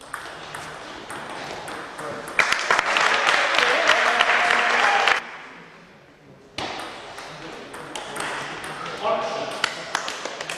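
Table tennis ball being struck back and forth by bats and bouncing on the table, sharp light clicks, then a loud burst of shouting for about three seconds once the point is won. A new rally of ball hits follows, with another short shout near the end.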